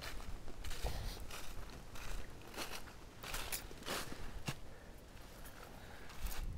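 Footsteps crunching through dry fallen leaves on a forest floor, roughly two steps a second, growing fainter near the end.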